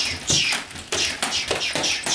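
Padded nunchucks spun fast, swishing through the air in a quick run of whooshes, with taps and chain rattles as the sticks change direction and are caught.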